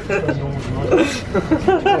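A man chuckling and laughing amid unclear talk.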